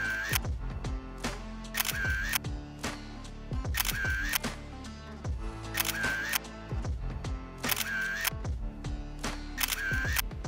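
Background music with camera shutter clicks, a quick pair about every two seconds.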